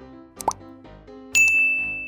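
Sound effects of a subscribe-button animation over light background music: a quick rising pop about half a second in, then a sudden bright ding whose single high tone rings on to the end.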